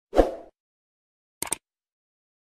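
Intro sound effects: a short soft thud that dies away within half a second, then silence, and a quick double mouse click about a second and a half in, the click effect of an animated subscribe button.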